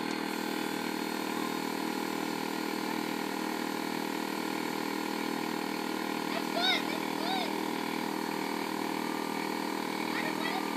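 Air compressor running steadily, pressurising a homemade PVC air cannon through its air hose. Two short high-pitched calls rise over the hum about seven seconds in.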